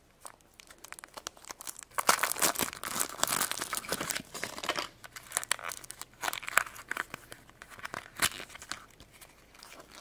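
Plastic and foil wrapping of a toy blind pack crinkling and tearing as it is opened by hand, in irregular bursts that are heaviest in the first half and thin out near the end.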